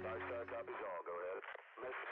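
A quiet, thin voice like speech over a two-way radio. The last held notes of background music die away about half a second in.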